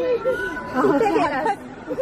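Young children's voices chattering and calling out in play, high-pitched and overlapping.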